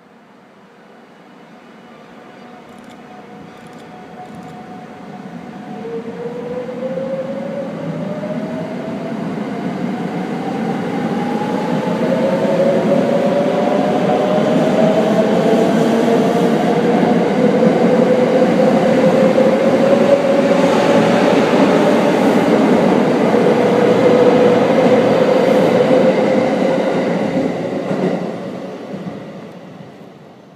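Limited express electric train pulling away and accelerating past, its motor whine rising steadily in pitch. The sound swells as the cars go by, over the running noise of the wheels, then drops away near the end as the last car clears.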